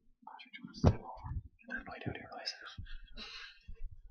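Low, murmured voices close to the microphone, softer than full speech, with a single sharp thump just under a second in.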